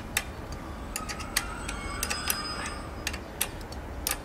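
A string of sharp, irregularly spaced light metallic clicks and taps from the tandem bicycle and its aluminium ladder being handled, with a faint thin ringing in the middle.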